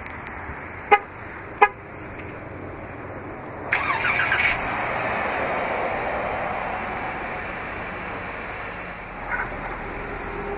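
Jeep Wrangler remote start: the horn gives two short chirps about a second in as the fob is double-pressed. About four seconds in, the 3.6-liter Pentastar V6 cranks and catches, then runs at a steady idle that slowly eases in level.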